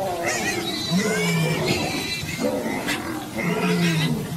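Animal cries from a leopard grappling with a warthog: a string of harsh, drawn-out calls, each lasting up to about a second, some held steady and some bending in pitch.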